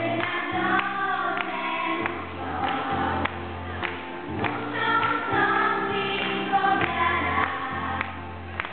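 Children's choir singing a religious song, with an instrumental accompaniment holding low bass notes underneath.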